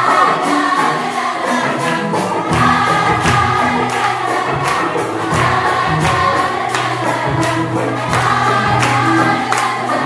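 Many voices singing together over loud music with a steady beat; a bass line comes in about two and a half seconds in.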